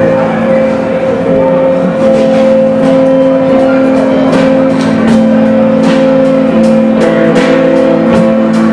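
Live rock band: two electric guitars holding steady chords over drums, with repeated cymbal and drum hits.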